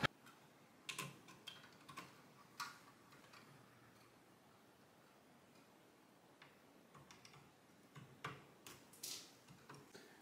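Faint small plastic clicks and cable rustle from the cooler's thin fan and ARGB cables being handled and their plugs pushed onto the motherboard's CPU fan and ARGB headers. The clicks come in two short clusters, one about a second in and one near the end.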